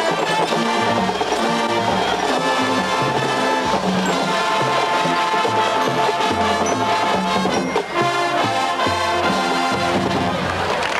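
High school marching band playing a brass-led tune, with bass notes stepping along underneath.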